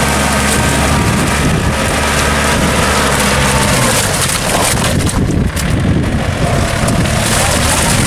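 Yanmar tractor's engine running steadily as its cage wheels work through the paddy mud. Around the middle the steady engine note turns rougher and noisier, with wind noise on the microphone.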